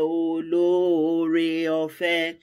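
A woman singing a thanksgiving worship song unaccompanied, in long held notes; a short breath about half a second in, then one note held for about a second and a half.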